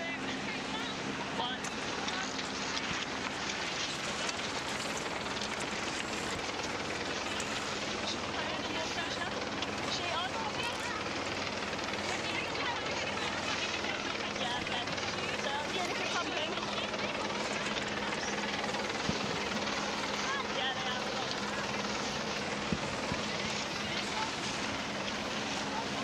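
Steady wind and water noise from sailing dinghies on open water, over a low steady engine drone.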